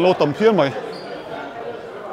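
A person's voice says a short phrase in the first second over a low murmur of other people talking in a large hall.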